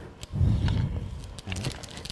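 Piping bag of buttercream being squeezed through a nozzle: a low, rough noise for about a second, then a shorter one.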